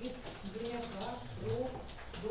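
A voice speaking indistinctly, the words not made out, in short phrases with pauses between them.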